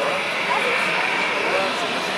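Steady whine of a taxiing Singapore Airlines Airbus A380's jet engines, heard over people chattering close to the microphone.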